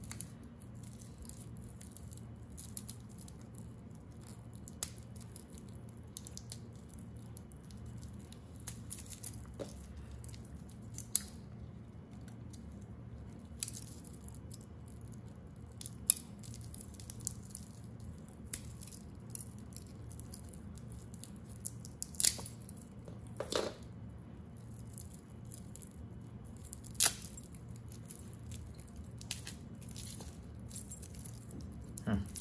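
Two-tone metal watch bracelet being handled: its links clink and rattle in scattered light clicks, with a few sharper clicks standing out in the second half.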